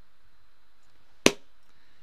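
A single sharp hand clap about a second into a pause, over low room noise.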